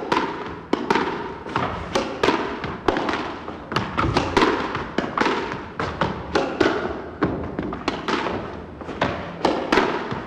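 Squash ball struck by a racket and rebounding off the court walls and floor in a quick, uneven series of sharp impacts, each ringing on in the echo of the enclosed court.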